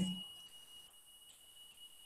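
A woman's voice trails off at the very start, then near silence with a faint, steady high-pitched tone underneath.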